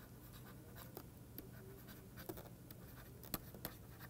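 Faint taps and scratches of a stylus on a pen tablet as a word is handwritten, a few sharper clicks a little after three seconds in, over a low steady hum.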